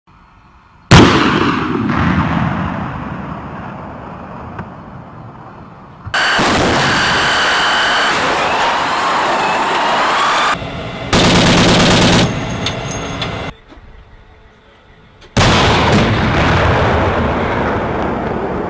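An Abrams tank's 120 mm main gun firing twice, about a second in and again near the end: each is a sudden very loud boom that rumbles away over several seconds. Between the shots come abruptly cut stretches of steady, loud vehicle noise with a thin high whine.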